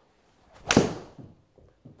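A short rush of a golf swing, then one sharp club-on-ball strike from a TaylorMade P790 UDI driving iron hitting off a mat, about two-thirds of a second in, fading quickly. It is a solidly struck shot, slightly pulled and de-lofted.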